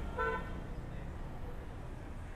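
A single short vehicle horn toot, a flat steady tone lasting a fraction of a second, just after the start. Under it is a low, steady rumble of road traffic.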